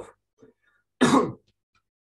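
A man clearing his throat once, a short rough burst about a second in.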